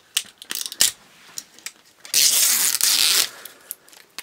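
Plastic toy packaging being torn open by hand: a few light clicks and crackles, then a loud tearing rip lasting a little over a second, about two seconds in. The tear strip gives way only part of the way.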